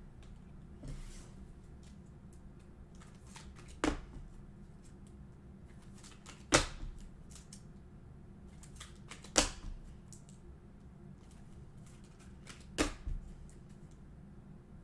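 Trading cards being handled at a desk: faint rustling with a sharp click about every three seconds, four of them loud.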